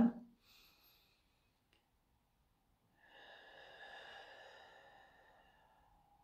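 A woman's slow, deep breath: soft and airy, starting about three seconds in and fading away over nearly three seconds.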